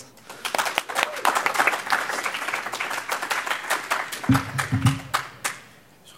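Audience applause: many hands clapping, starting about half a second in and thinning out near the end.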